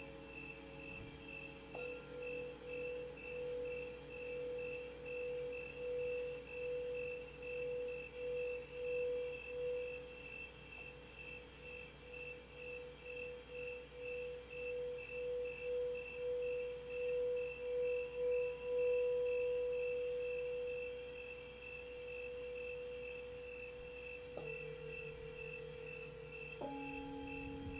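A singing bowl being rimmed with a mallet: one sustained tone wavers in regular pulses that grow quicker and louder, then rings on smoothly and fades once the rubbing stops, about two-thirds through. Near the end a second bowl is struck, adding a new ringing tone with a lower one beneath it.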